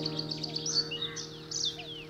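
Songbirds chirping, with quick falling whistles, over the fading ring of a held soft piano chord.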